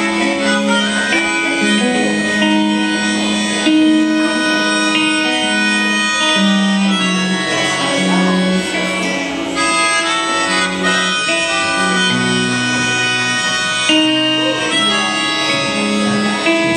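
Live band playing an instrumental passage on electric guitars, bass and drums, with a harmonica carrying long held notes over a moving bass line.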